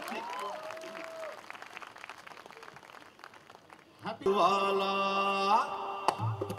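Audience applause at a live concert, thinning out over about four seconds, with a voice briefly over it at the start. About four seconds in, the band strikes a loud held chord, lasting about a second and a half.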